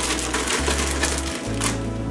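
Background music with a steady bass line, over the rustle and rattle of a plastic zipper bag being shaken to coat venison backstrap in panko breadcrumbs and pistachios.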